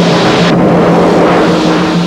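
Loud, dense rushing sound effect over a steady low droning tone; the highest hiss drops away about half a second in.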